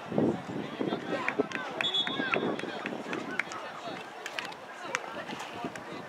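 Soccer players shouting to each other in play, with running footsteps and scattered sharp knocks from the ball being kicked in a scramble. The loudest moment is a burst of voices and knocks right at the start.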